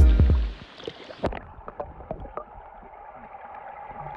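Background music cuts off in the first half second. What follows is the muffled sound of a phone's microphone under water: a dull hiss with scattered clicks and pops from bubbles.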